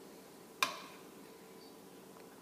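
A serving spoon clinks once, sharply, against the dishes as pan juice is spooned onto rice, with a brief ringing tail, over a faint steady hum.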